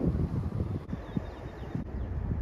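Wind buffeting the microphone: an uneven low rumble, cut short twice by edits.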